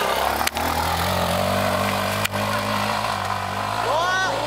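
Trail motorcycle engine pulling steadily under load as the bike climbs a steep dirt hill, with a couple of sharp clicks over the top.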